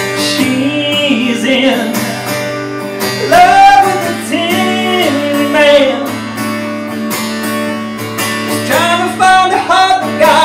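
Steel-string acoustic guitar strummed in a live solo folk song, with a man singing long, wavering notes over it from about three seconds in and again near the end.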